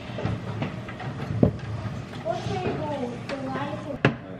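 Kitchen handling noise with scattered knocks, the sharpest about a second and a half in. A voice speaks quietly in the second half.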